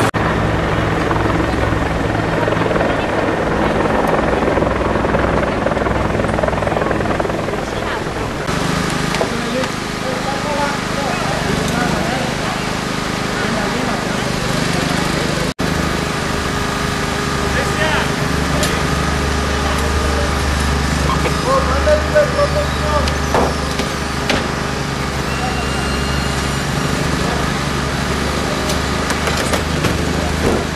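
A small engine running steadily with a low hum under people talking, with a few short knocks and clanks in the second half.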